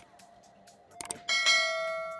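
Two or three short mouse clicks, then about a second and a quarter in a bell-like chime struck once that rings on and fades slowly. This is the sound-effect chime of a subscribe-and-notification-bell animation.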